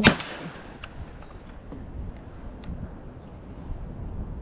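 A single close shotgun shot at the very start, loud and sharp, dying away within a fraction of a second, fired from the hip at a fast-flying duck. A low steady background follows, with a few faint clicks.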